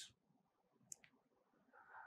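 Near silence: room tone, with one faint, short click about a second in.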